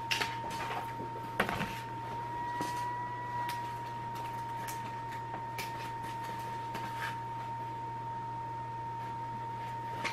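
Scattered clicks of a computer mouse, several close together in the first two seconds and single ones later. Under them run a steady high whine and a low hum.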